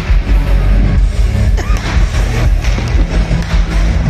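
Live pop concert music played loud through a stage PA, heard from within the audience, with a strong, continuous bass.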